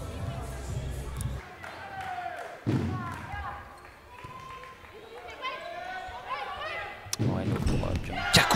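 Volleyball rally in a sports hall: a sharp ball strike about three seconds in and another near the end, with players' shoes squeaking on the court and short calls between them.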